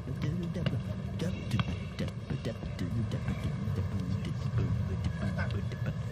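Outdoor city street ambience: a steady low traffic rumble with faint, indistinct voices and scattered sharp clicks.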